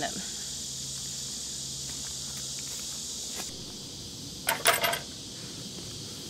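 Camera being picked up and repositioned: a brief cluster of handling knocks and rattles a little past the middle, over a steady high hiss.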